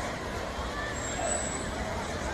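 Slow-moving motorcade vehicles with a roadside crowd's voices over them, and a brief high thin tone about halfway through.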